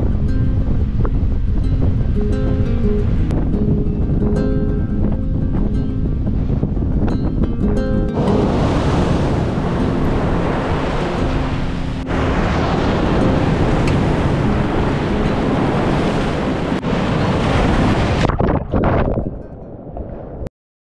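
Background music over low wind rumble on the microphone. About eight seconds in, loud breaking surf washes in over it with the music still underneath, and both fade out near the end.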